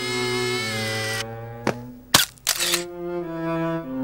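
Cello-led bowed string music plays. About two seconds in, a camera shutter clicks sharply, followed by a brief rasping noise.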